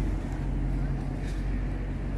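Steady low hum of a vehicle engine with street noise, with faint voices in the background.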